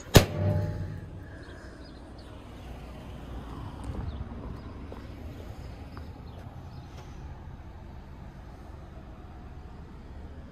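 A single sharp clack right at the start as the door of a discarded microwave is handled among the trash, followed by a brief low rumble. After that there is only low, steady outdoor background noise with a slight swell about four seconds in.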